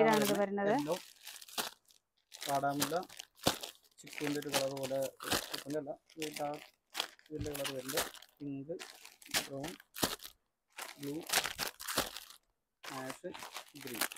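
Plastic wrapping on packed silk sarees crinkling and rustling as the sarees are handled and stacked, on and off between stretches of speech.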